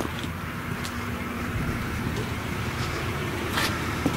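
Steady low rumble of nearby road traffic, with a faint hum in the first couple of seconds and one light click near the end.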